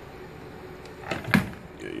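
A sharp click about a second and a third in, with a couple of softer ticks just before it, over faint steady room hiss; a man's voice says "yeah" at the very end.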